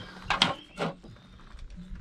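A spirit level being set down and shifted on the edge of laid stone tiles: two or three short knocks and scrapes in the first second.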